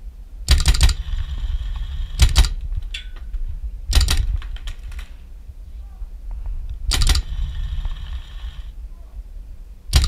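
Paintball marker firing in four short bursts of a few rapid shots each, with wind rumbling on the microphone between them.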